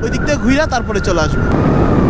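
Suzuki Gixxer SF motorcycle being ridden at speed: the engine running steadily under a heavy rush of wind on the camera's microphone.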